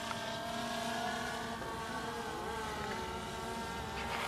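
Distant DJI Phantom Vision 2 Plus quadcopter, its four propellers humming faintly and steadily as it flies away, the pitch wavering slightly.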